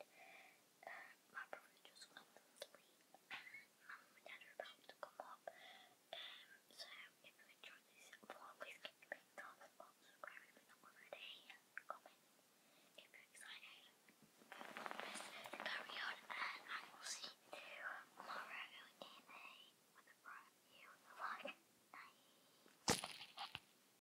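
A girl whispering close to the microphone, faint at first and louder through the middle stretch. Near the end a single sharp knock as the phone is handled.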